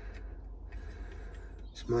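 Steady low background hum with a few faint clicks of metal parts being handled at the engine block; a man's voice begins right at the end.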